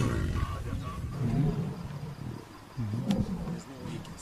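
Lionesses and Cape buffalo in a fight, with a few low calls that rise and fall in pitch, growling and bellowing about a second apart. The strongest call comes near the end.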